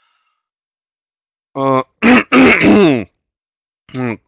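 A man's wordless hesitation sounds: a short 'uh' about a second and a half in, then a longer drawn-out vocalization that falls in pitch, after a stretch of dead silence.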